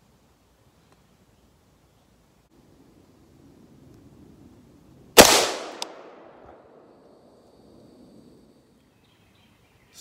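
A single shot from an AR-15 rifle about five seconds in: one sharp, loud report that dies away over about a second.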